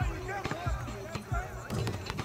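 Background scene ambience: distant voices and a few dull thuds, under music.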